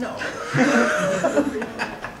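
A person laughing in short chuckles after a spoken "No," in a lecture hall.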